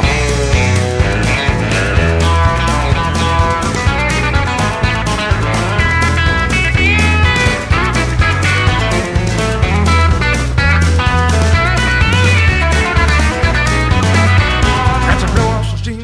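Rock song in an instrumental break: an electric guitar plays a lead line full of bent and sliding notes over a steady drum beat and bass line. The music dips briefly near the end.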